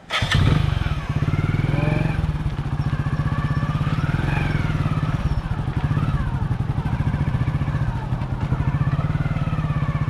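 Motorcycle engine starting up abruptly and then running steadily, with a fast, even firing pulse.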